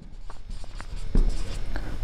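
Felt-tip marker writing on a whiteboard: a run of short, scratchy pen strokes.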